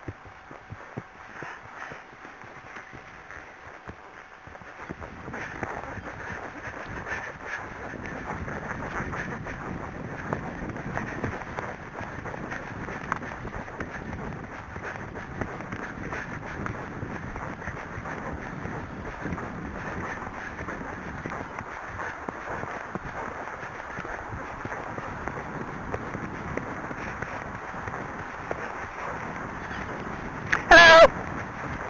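An Arabian horse's hoofbeats on a woodland track, with wind rushing on the microphone. The sound grows louder from about five seconds in, becoming a dense run of hoofbeats and wind.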